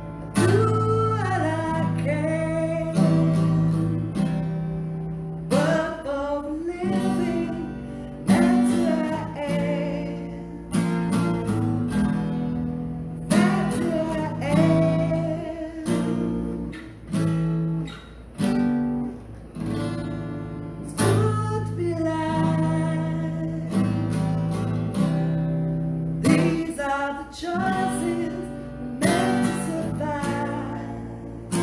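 A woman singing over a strummed steel-string acoustic guitar, with the sung lines coming in phrases of a few seconds between sustained chords.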